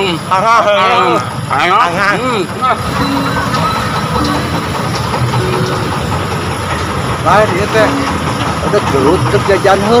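Men's voices over a steady low mechanical rumble, like an engine running, that carries on under and between the talk.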